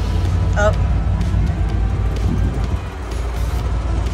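Background music over the steady low rumble of an old Willys Jeep driving on a rocky trail, with a short wavering vocal sound about half a second in.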